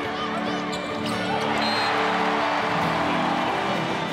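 Background music over a volleyball arena crowd cheering, with players' excited shouts on court.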